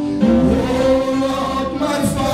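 A man singing a gospel praise song into a handheld microphone over instrumental backing.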